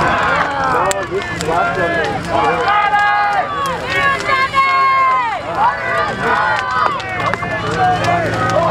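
A crowd of many voices shouting and calling over one another, with a few long drawn-out cries in the middle.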